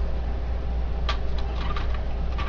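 A steady low background hum, with a few faint light clicks in the second half as the laser printer's plastic rear door and door stopper are handled.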